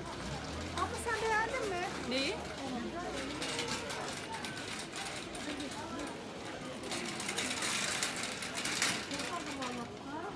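Crowd ambience of a busy pedestrian shopping street: passers-by talking near and far, with stretches of rustling noise in the middle and near the end.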